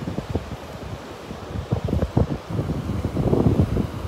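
Wind buffeting the microphone in uneven gusts, a low rumbling that swells about two seconds in and again near the end.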